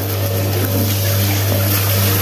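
A steady low hum under a constant hiss.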